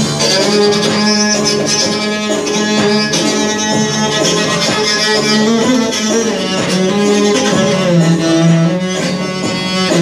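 Small cello-sized 'midget bass' bowed in a rough, improvised passage of long held notes, over an electronic organ backing.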